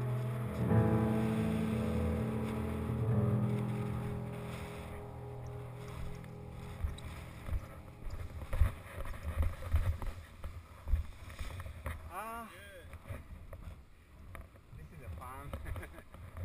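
Solo piano music fades out over the first few seconds. After it come irregular low thumps and rumble of wind on the microphone, with two brief rising-and-falling voice-like calls, one around twelve seconds in and another near the end.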